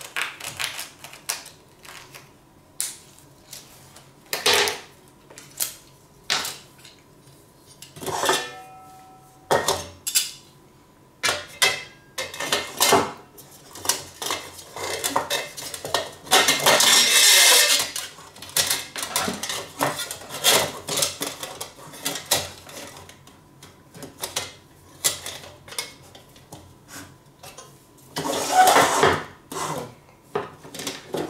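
Thin aluminium parts of a Trangia 25 cookset being handled and fitted together as the gas burner goes into the stove's windshield holder: repeated light clinks and knocks of metal on metal and on the table. A short metallic ring comes about eight seconds in, and a denser two-second stretch of scraping comes midway.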